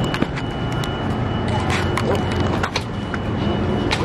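Steady low rumble of city street traffic, with a few scattered knocks and clicks.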